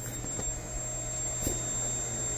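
Vacuum cleaner running steadily: a continuous drone with a thin, high, steady whine.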